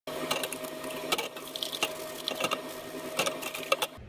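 Tap water running into a stainless steel sink while glasses and cups are rinsed and set down, with about half a dozen sharp clinks of glass and metal against each other and the sink.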